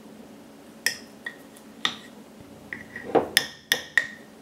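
Metal spoon clinking against the inside of a glass mason jar as it works flour and water: scattered sharp clinks, coming faster and louder near the end.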